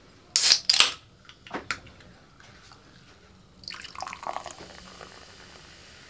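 Aluminium can of 7 Up lemon-lime soda being opened, the pull tab giving a sharp crack and hiss in two quick bursts near the start. From a little past halfway the soda pours into a glass and fizzes.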